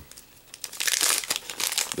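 Foil wrapper of a Pokémon card booster pack crinkling as it is handled and opened. The crackling starts about half a second in, after a brief lull.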